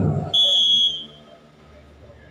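A referee's whistle blown once: a short, steady, high blast of about half a second, signalling the server to serve.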